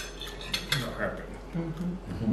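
A metal fork clinking and scraping against a ceramic dinner plate during a meal, with a few sharp clicks, one at the start and others about half a second and a second in.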